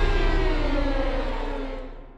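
Cinematic horror sound effect: the ringing tail of a deep boom, its tones sliding steadily downward in pitch as it fades out near the end.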